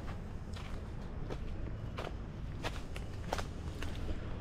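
A hiker's footsteps on a rainforest trail covered in fallen leaves, irregular steps about every two-thirds of a second.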